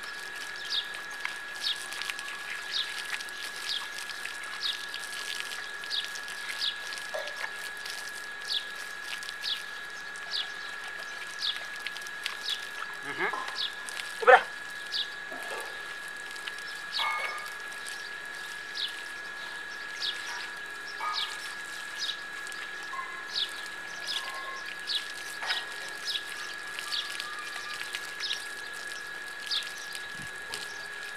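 A bird calling over and over, short falling chirps about once a second, over a steady thin high tone. A brief cluster of louder sweeping calls comes about halfway through.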